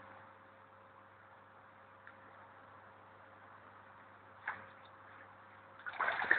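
Near silence: a faint steady low hum, with a brief faint sound about four and a half seconds in.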